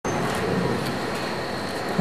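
Steady, even background noise with a faint high whine and no distinct events.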